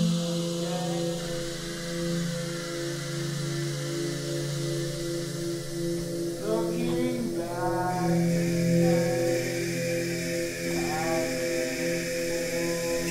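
Electronic music from a software synth played on a MIDI keyboard: a steady low chord held throughout, with wordless, chant-like gliding tones sliding over it about six and a half seconds in and again near the end.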